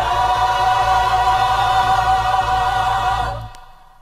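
Gospel choir holding one loud sustained chord for about three seconds, the voices wavering slightly, then dying away near the end.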